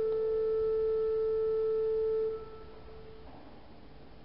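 Pipe organ holding a single note with faint overtones, released about two seconds in, its sound then dying away in the stone church's reverberation.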